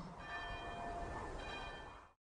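A church bell tolling faintly, two strokes about a second apart, each ringing on.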